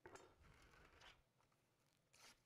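Near silence, with a faint scratchy rustle in the first second or so.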